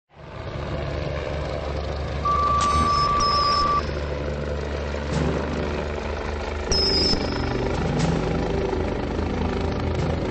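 Low, steady rumble of heavy machinery, with a single steady electronic beep lasting about a second and a half, starting a little over two seconds in.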